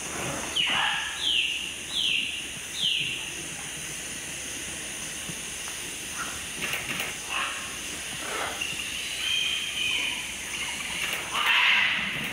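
Birds calling at a scarlet macaw clay lick: four short calls falling in pitch in the first three seconds, then scattered calls. Near the end comes a louder rough burst as the macaws begin to fly off.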